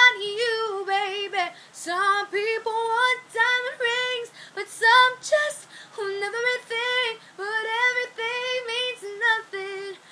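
A young woman's voice singing unaccompanied, in a string of short held and wavering notes with no clear words.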